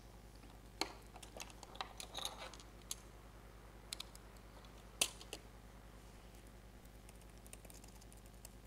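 Quiet laptop keyboard typing and handling clicks in scattered taps, with sharper knocks about one and five seconds in, over a faint steady mains hum.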